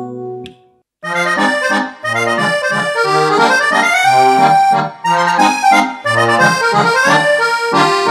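Kurtzman K650 digital piano playing its built-in voice demos: the previous demo dies away in the first half-second, and after a short silence a new demo tune starts about a second in, a melody over held chords and a bass line in a steady rhythm.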